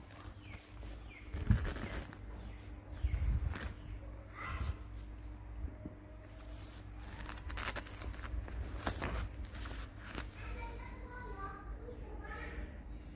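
A young otter giving short, high, falling chirps: a couple in the first second, one about four and a half seconds in, and a quick string of them near the end. Knocks and rustles come as it pushes against a nylon bag and tripod legs, the loudest knock about a second and a half in.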